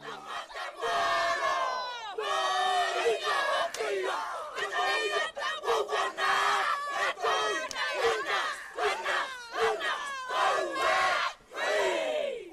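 A group performing a Māori haka: many voices shouting and chanting together in loud rhythmic calls.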